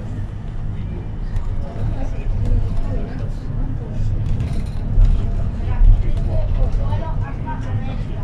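Steady engine and road rumble heard from inside a 2022 Iveco minibus on the move, swelling briefly twice in the middle.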